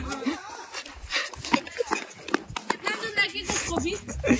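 People talking and calling out in the background, with a few short knocks among the voices.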